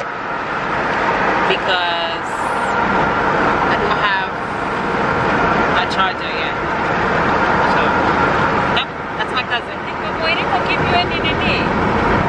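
Steady road and engine noise inside a moving car's cabin, with voices talking over it at intervals.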